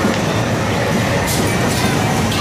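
Loud, steady din of a busy arcade: machines running and people in the background, with no single sound standing out.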